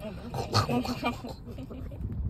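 Maltese dog licking a person's hand with quick, wet lapping sounds, much like a dog drinking water.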